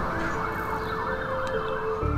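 An emergency-vehicle siren wails in rapid rising and falling sweeps, fading near the end, over background music with long held notes.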